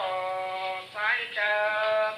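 A woman singing long, drawn-out notes that bend and glide from one pitch to the next, the line broken by a short breath just before the middle.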